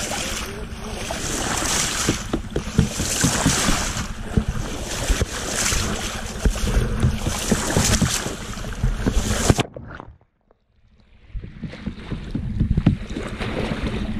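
Sea water rushing and splashing against a camera held at the waterline of a moving sailboat. A little under ten seconds in, the sound cuts off suddenly as the camera goes under, drops to almost nothing, then returns duller.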